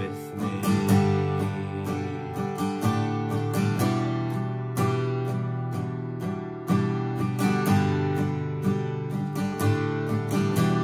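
Acoustic guitar strummed in even downstrokes, sustained open chords ringing between strokes.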